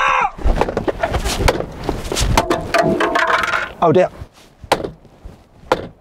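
A wooden baseball bat repeatedly whacking the bottom of a car's steering-wheel rim, flattening it: a quick run of hard hits, about two or three a second, then two more single hits near the end.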